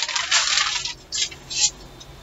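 A large sheet of paper being swung and handled, rustling and crinkling through the first second, then two short rustles.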